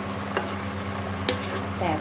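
A wooden spatula stirring and scraping shrimp and stink beans in a thick curry sauce in a nonstick wok, with a light sizzle from the pan. The spatula knocks sharply against the pan twice, over a steady low hum.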